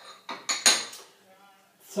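Metal kitchen utensils clinking at a cutting board: a few sharp clinks with a short metallic ring, bunched together in the first second.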